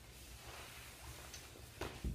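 Faint rustling of cotton shade fabric being lifted and folded over on a work table, with a short louder brush of cloth near the end.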